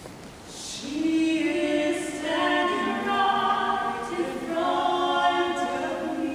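Mixed choir of men and women singing a cappella, coming in about a second in with sustained chords in two long phrases.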